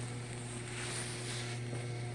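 A steady low hum, even in level, with no other event standing out.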